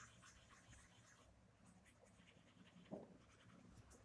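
Faint scratching of a pencil shading on sketchbook paper, with one soft knock about three seconds in.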